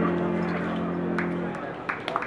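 The last chord of a song on a Yamaha digital keyboard, held and fading away until it dies out about one and a half seconds in. The first few scattered claps from the audience come in near the end.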